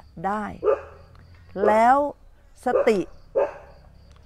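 A dog barking now and then behind a woman's speech.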